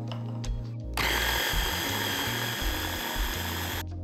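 Electric blender with a chopper bowl running for about three seconds, pureeing pumpkin; it starts about a second in and cuts off just before the end, with a steady motor whine in the noise. Background music plays underneath.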